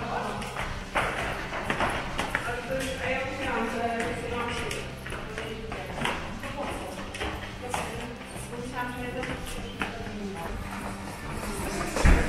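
Footsteps of several people climbing a stairwell, a string of quick steps, with women's voices chatting and calling out among them.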